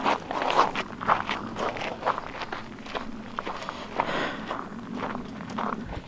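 Footsteps crunching on dry, gravelly desert ground as a person walks over to a target.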